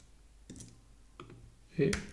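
A few faint, short clicks at a computer, the sort made by keys or a mouse button, about half a second in and again a little after a second.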